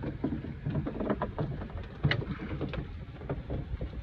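Low steady rumble with a few short light knocks and splashes at the side of a moored boat.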